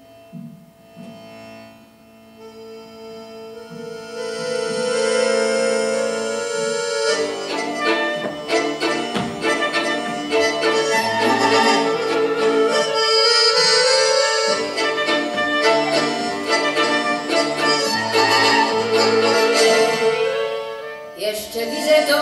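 Live instrumental introduction in waltz time played on accordion and violin. It starts softly with held notes, swells about four seconds in, and turns into a full, evenly pulsed accompaniment about seven seconds in.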